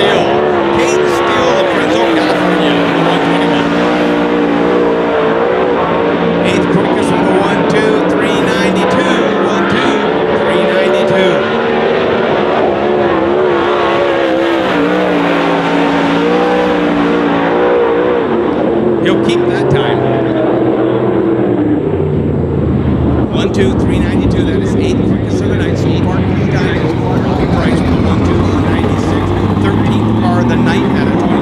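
410 sprint car's V8 engine at racing speed on a dirt oval, its pitch rising and falling over and over as the throttle opens down the straights and lifts for the corners. From about two-thirds of the way in the engine note drops lower and runs steadier.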